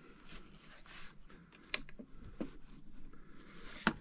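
Handling of a plastic radio-control transmitter: a few sharp clicks from its switches and sticks being worked, the clearest a little before two seconds in and just before the end, over quiet room noise.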